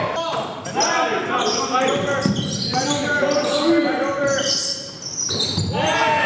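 Live basketball game in a large gym: a basketball bouncing on the hardwood court amid players' voices calling out, all echoing in the hall.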